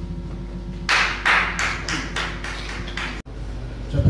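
A run of about seven evenly spaced noisy strokes, roughly three a second, over a steady electrical hum; the sound cuts off abruptly just after three seconds in.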